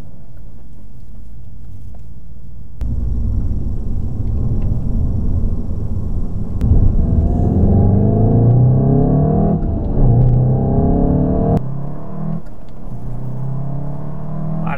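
Seat León Cupra 290's turbocharged 2.0-litre four-cylinder, heard from inside the cabin. It starts as a low steady rumble, about three seconds in turns much louder as the car accelerates hard with the engine note rising in pitch, then settles back to a steadier, lower drone about two seconds before the end.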